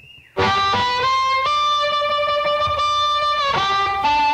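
Electric blues guitar opening a song, starting about a third of a second in with one long held note that steps up slightly and then drops away near the end.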